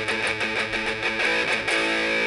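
Electric guitar picked in repeated strokes on the low strings, moving to a new chord shape near the end.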